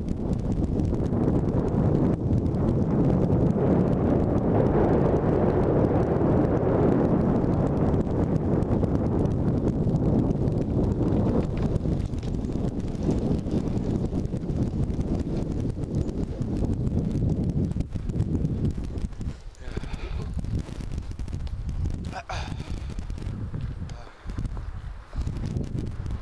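Longboard wheels rolling over an asphalt path: a steady rumbling rush, loudest in the first ten seconds or so, then easing and turning more uneven, with short dips in the second half.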